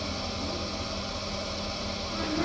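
Potter's wheel running with a steady motor hum and an even hiss.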